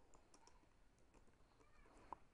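Faint typing on a computer keyboard: a few soft, scattered key clicks.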